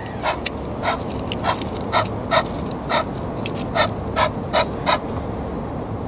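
Egyptian goose making a string of short, husky, breathy calls at an uneven pace of about two a second.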